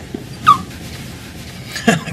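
A short, sharp, high squeal from a man's voice, sliding down in pitch, about half a second in; it is the loudest sound here. Laughter starts near the end.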